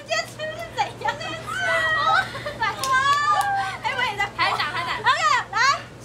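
Excited chatter of several young women's high voices talking over one another, with pitch swooping up and down in exclamations.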